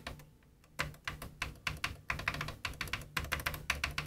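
Tactile switches under the Sound Color FX push buttons of a Pioneer DJM-800 DJ mixer clicking as they are pressed over and over. After a single click, a quick run of small clicks starts about a second in. The audible clicks show that these switches are working.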